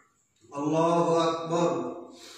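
A man's voice chanting a short Arabic prayer phrase in a drawn-out, steady-pitched recitation. The phrase begins about half a second in and fades near the end.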